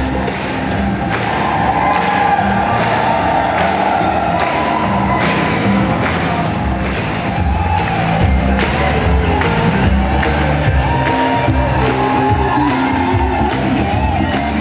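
Gospel choir singing with a live band: many voices over keyboard and a drum kit keeping a steady beat of about two strokes a second.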